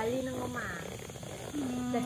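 A person's voice making drawn-out, steady-pitched hums with no clear words: one at the start and another held from about a second and a half in, with a short higher rising sound between them.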